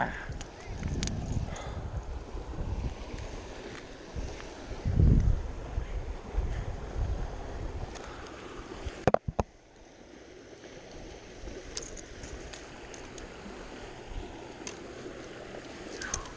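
Wind rumbling on a body-worn camera's microphone, with rustling and handling noise and a loud low surge about five seconds in. A few sharp knocks come just after nine seconds, and after them it goes quieter.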